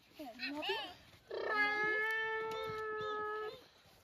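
A young child's voice imitating a cat: a short, wavering, sliding meow, then about a second in a long, steady held call that stops abruptly.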